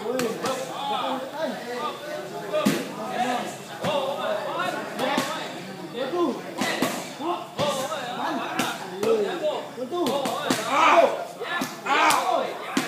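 Boxing gloves striking Thai pads during Muay Thai pad work: repeated sharp smacks at irregular intervals, over a background of men's voices.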